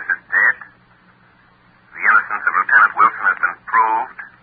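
Spoken voices from an old, narrow-band radio-drama recording: a short phrase at the start, a pause of about a second and a half, then a longer stretch of talk. A faint steady low hum runs underneath.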